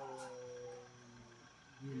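An elderly man's voice drawing out the last vowel of a word at one steady pitch for over a second, then a short pause before he starts speaking again near the end.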